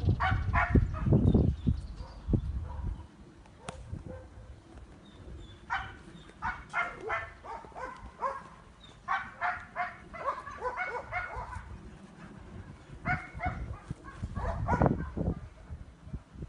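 German shepherd dog whining and yipping in clusters of short, high-pitched calls, off and on. A low rumble sits under the first couple of seconds and comes back near the end.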